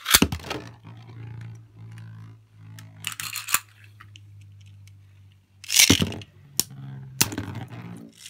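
Beyblade spinning tops in a plastic stadium. One top is launched with a clatter and then spins with a steady low hum. Near six seconds a second top is launched in, and a few sharp clicks follow as the two tops strike each other.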